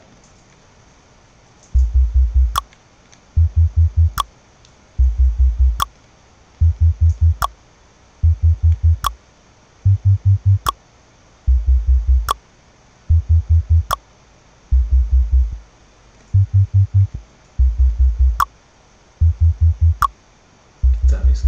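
Electronic track looping in playback at 148 BPM: each bar a short run of deep bass notes, followed by a sharp tongue-click sample.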